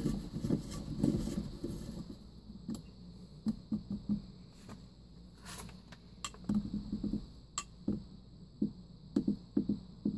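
Clear plastic sump of a Purwater FHT-34V whole-house filter housing being screwed back onto its head by hand: faint, scattered clicks and brief rubbing of hands and plastic threads.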